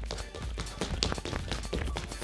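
Quick run of light footfalls: sneakers tapping and landing on a wooden stage floor as a shuffle dancer does the criss-cross step with very small, fast hops, the low hops keeping the rhythm quick. Music plays underneath.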